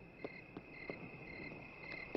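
Faint chirping of crickets, in regular pulses about twice a second, as night-forest ambience, with a few soft ticks.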